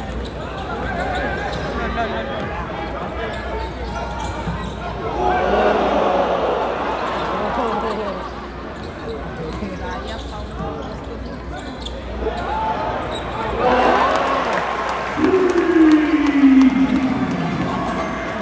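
Arena crowd noise at a live basketball game: a steady murmur of many voices with a basketball bouncing on the hardwood court. The crowd swells twice, and near the end one long call falls in pitch.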